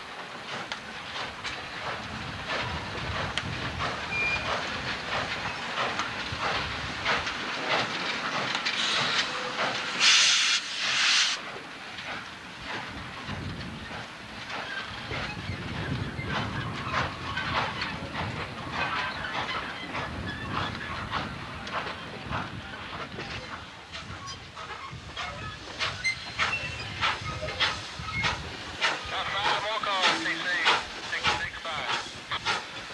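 Norfolk & Western J-class 611 steam locomotive moving slowly, its exhaust and running gear beating in a steady rhythm. About ten seconds in, a loud burst of steam hiss lasts about a second and a half.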